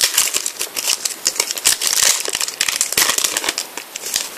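Foil trading-card sachet being torn open by hand, its wrapper crinkling and crackling in an irregular flurry, with louder bursts about two and three seconds in.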